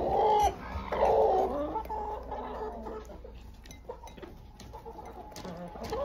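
Hens clucking, loudest in the first second and a half, then quieter with a few scattered small clicks.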